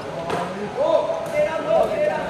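Three sharp knocks of a sepak takraw ball being struck, one near the start and two in quick succession late on, over people calling out and chattering.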